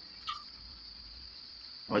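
A steady high-pitched whine in the background, with a short faint sound about a quarter of a second in.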